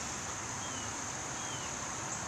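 Steady outdoor background hiss with a constant high-pitched band, and two faint short high chirps about midway.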